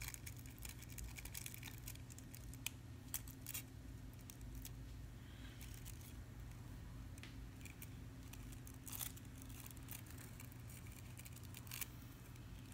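Faint rustling of nail-art transfer foil and scattered light clicks as it is pressed and rubbed onto a gel-polished nail tip with long acrylic nails, over a low steady hum.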